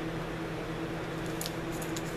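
Steady hum of an electric fan running, with a few faint crisp ticks from dry cattail leaves being creased by hand about one and a half seconds in.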